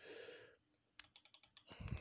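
A quick run of about six keystrokes on a computer keyboard, clicking about a second in, after a brief hiss at the start.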